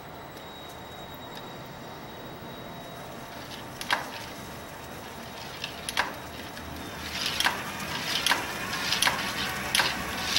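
A drill slowly turning a homemade plywood coil-winding jig with a low steady hum while wire is wound onto the coil. Sharp ticks come in a few seconds in, then grow more frequent and louder toward the end, about two a second.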